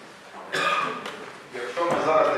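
A man's voice speaking into a podium microphone in short phrases, with a pause at the start.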